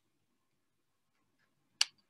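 A single sharp click near the end, with a faint tick shortly before it; otherwise near silence.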